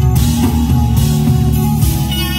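Live smooth-jazz band playing: soprano saxophone over keyboard, bass guitar and drum kit, with a cymbal struck about once a second.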